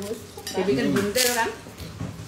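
Light clatter of dishes on a dining table, with a short murmur of a voice.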